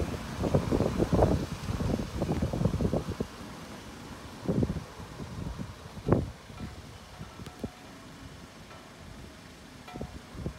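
Wind buffeting a phone microphone, with irregular gusts through the first three seconds, then quieter with a few single thumps of handling noise.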